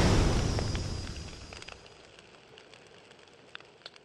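Intro sound effect of a fiery explosion: a deep rumble that dies away over about two seconds, followed by a few faint crackles.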